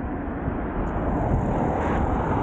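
A car passing close on the adjacent road, its tyre and engine noise swelling from about a second in, over a steady rush of wind and road noise.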